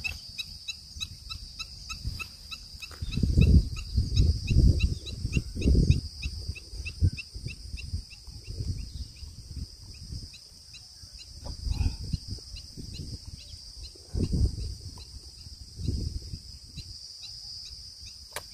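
Insects chirping in a fast, steady pulse throughout, over irregular low thuds and rustling from a caught snakehead fish being handled on a grassy bank; the thuds are loudest about three to six seconds in and come again near the end.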